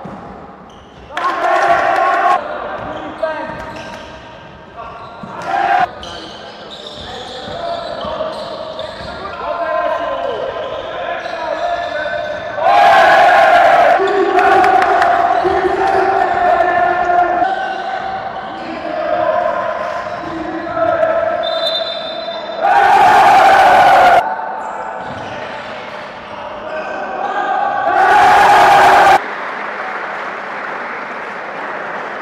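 Basketball game sound in a reverberant sports hall: a ball dribbling and players' voices. A scoreboard buzzer sounds four times, each blast about a second long, the first about a second in.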